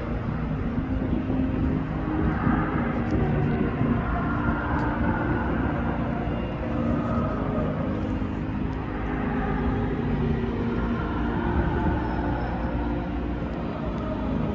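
Live stadium concert music heard from far across the city: muffled sustained chords and singing, blurred under a steady low rumble.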